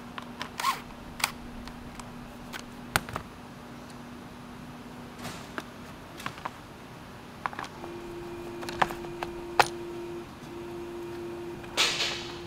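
Scattered light clicks and knocks of plastic and metal parts being handled as a new radiator cooling fan and its control module are fitted into a plastic fan shroud, with a faint steady hum behind. A louder burst of noise comes just before the end.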